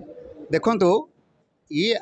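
Speech only: a man says a short phrase about half a second in, pauses briefly, and starts talking again near the end.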